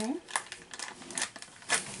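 Packaging being handled, crinkling and rustling in a string of short, separate crackles.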